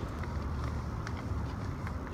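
Low outdoor rumble with a few faint clicks, from a phone camera being swung about in the hand near a bike-share bike on a street.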